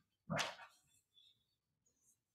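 A single short, breathy vocal sound from a person speaking close to a handheld microphone.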